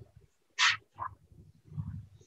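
A short breathy vocal noise from a man at a lectern microphone about half a second in, then a fainter one about a second in, during a pause in his talk.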